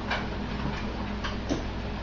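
A few faint, irregular clicks over a steady low hum.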